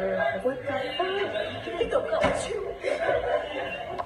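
People talking with laughter and chuckling mixed in, and a short knock or clap about two seconds in.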